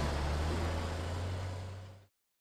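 Fading tail of an outro logo sound effect: a steady low hum under a hiss, dying away and cutting off to silence at the end.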